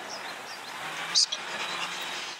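Steady outdoor background noise, with one short, sharp, high-pitched sound just over a second in.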